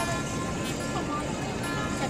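Steady road and engine noise heard inside a moving car's cabin, with music playing and faint voices.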